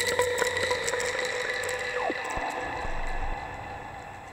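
Eurorack modular synthesizer music generated from a houseplant's biodata by an Instruo Scion module: a held tone with a stack of overtones and scattered clicks, with a pitch that falls quickly about two seconds in. It grows a little quieter near the end.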